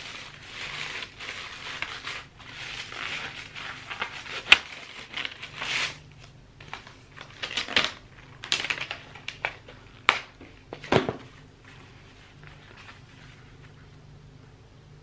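Clear plastic packaging crinkling and rustling as it is pulled open by hand, with scattered sharp snaps and crackles, one loud snap about four and a half seconds in. It quietens for the last couple of seconds.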